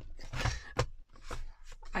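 Card stock rustling and sliding, with a few light plastic clicks, as a freshly punched card is drawn out of a plastic word punch board and its punch head is lifted.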